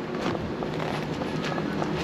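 Steady hum of a DC fast charger's cooling equipment running during a charge, with wind noise on the microphone.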